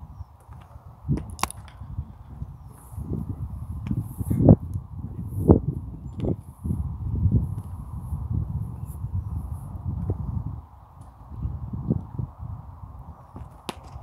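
Wind buffeting an outdoor microphone: an uneven low rumble that swells and fades in gusts, strongest a little before the middle.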